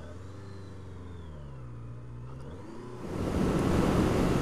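Honda CB650F's inline-four engine pulling away, its pitch rising and falling as it accelerates. About three seconds in, the sound jumps to a much louder rush of wind noise over the engine at highway speed.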